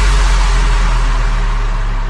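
Electronic dance music at a transition: a deep sub-bass boom and a wash of white noise are held with no beat and slowly fade.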